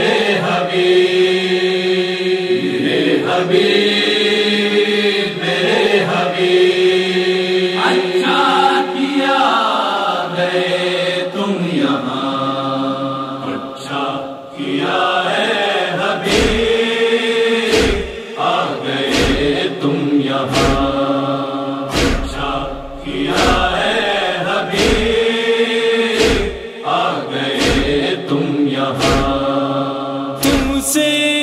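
Wordless chanted vocal chorus holding slow, drawn-out notes, the introduction to a noha lament. About halfway through, deep thumps join in a steady beat of roughly one a second.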